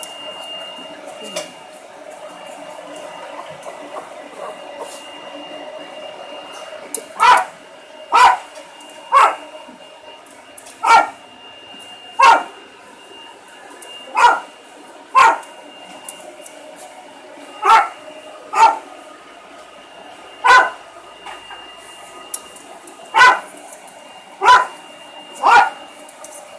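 Small white long-haired dog barking: about thirteen single sharp barks, spaced a second or two apart, starting about seven seconds in. Before the barking there is only a faint steady background with a thin high whine.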